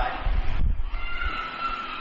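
Low rumble on a handheld microphone held close to the mouth, lasting about a second, followed by faint steady high-pitched tones.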